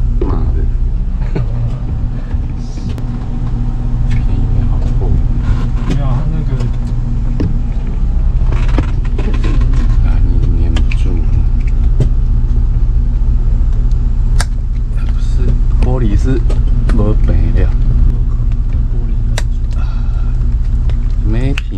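Boat's engine idling with a steady low hum, with a few sharp clicks as a suction-cup mount is handled against the windscreen.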